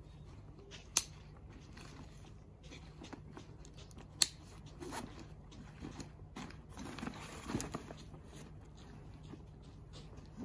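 A camouflage hunting backpack being handled: nylon fabric and straps rustling, with two sharp clicks, about one and four seconds in, as its buckles are snapped shut.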